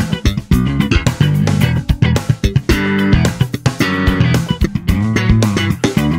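1966 Fender Jazz Bass with Rotosound strings played slap style, recorded direct through a SansAmp DI: a funk groove of popped double stops on the D and G strings against thumb-slapped open E and ghost notes. Each pop and slap starts with a sharp click over a ringing low note.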